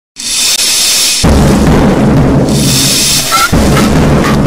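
Hardcore punk recording starting loud: about a second of hissing, high-pitched noise, then the full band crashes in with heavy, distorted low end and drums.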